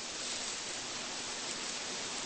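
Steady hiss with no speech: the background noise of the sermon recording.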